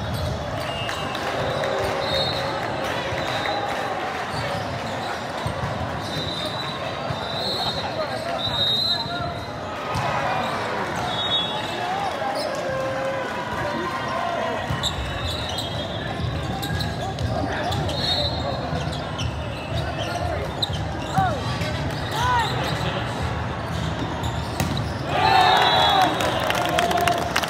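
Indoor volleyball rally: sneakers squeaking on the court, the ball being struck, and players and spectators calling out, echoing in a large hall. Near the end the voices rise sharply into shouting and cheering as the point ends.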